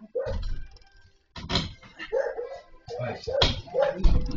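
A dog barking in a string of short barks, several over a few seconds, picked up by a security camera's microphone.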